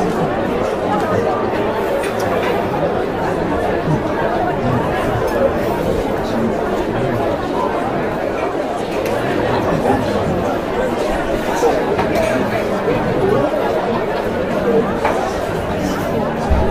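Café ambience: many indistinct overlapping conversations blending into a steady murmur of chatter, with occasional faint clinks of crockery or cutlery.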